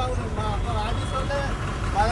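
Low, steady rumble of vehicle engines idling in traffic, a bus right alongside, with faint voices over it.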